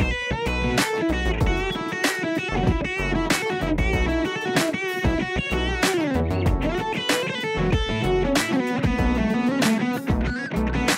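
Overdriven electric guitar playing lead lines with vibrato, through a Blackstar Debut 15E practice amp's smooth overdrive channel, and a slide down in pitch about six seconds in. Under it runs a jam track with a steady beat.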